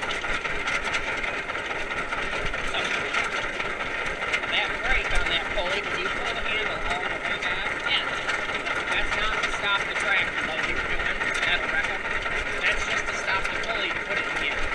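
Old John Deere tractor's engine running steadily while the tractor drives across a hayfield, heard from the driver's seat.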